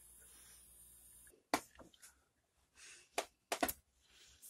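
Handling noise: a few sharp, separate clicks and knocks as the homemade air rifle and its air tank are moved about, three of them in quick succession near the end, over a faint steady hum.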